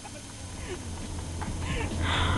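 Steady low rumble of a car's engine and road noise heard inside the cabin while driving, growing slightly louder toward the end, with a faint short voice sound near the end.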